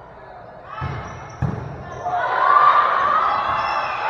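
A volleyball struck in a gym: a dull thud, then a sharp smack about a second and a half in. Right after, players and spectators yell and cheer, echoing in the hall.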